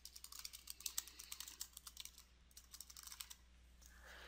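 Faint, rapid typing on a computer keyboard: a quick run of keystrokes that stops about three seconds in.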